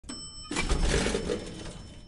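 Channel intro sound effect: a brief bell-like ding, then a louder clattering noise with a low rumble that slowly fades.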